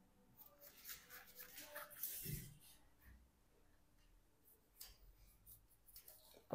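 Near silence with faint, scattered scratching and rustling: a steel derailleur shift cable being fed through its housing by gloved hands.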